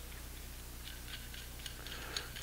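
A few faint metallic clicks and small scrapes, mostly in the second half, as a suppressor retaining nut is spun by hand onto the threaded muzzle of a Steyr AUG barrel.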